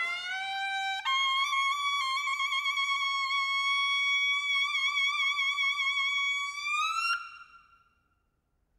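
A Korean double-reed wind instrument plays alone. It starts on a lower note, steps up after about a second, and holds one long note with a slight vibrato. The note bends upward near the end and cuts off about seven seconds in, leaving a short ring of room reverb.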